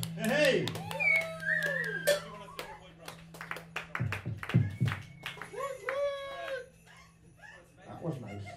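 Small audience clapping and whooping just after a live rock song ends, with a low steady hum from the band's amps underneath that dies away near the end.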